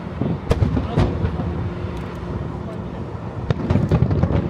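Aerial firework shells of a starmine barrage bursting: sharp bangs about half a second and a second in, then a quick cluster of bangs near the end.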